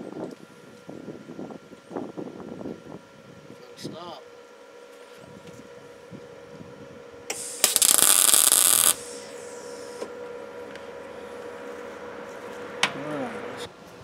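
Wire-feed welder laying a single tack weld on steel sheet: one loud stretch of arc noise lasting about a second and a half, a little past halfway through.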